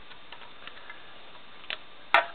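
Plastic parts of a Transformers Generations Dirge figure being moved by hand, giving a few faint clicks and one sharper click near the end, over a steady hiss.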